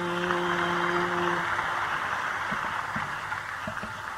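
Audience applause as a steady patter at the close of a Carnatic concert piece. The last held note of the music under it stops about a second and a half in.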